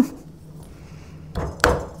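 A glass decanter stopper being handled and fitted in the neck of a glass liquor bottle, with two short, dull knocks about a second and a half in.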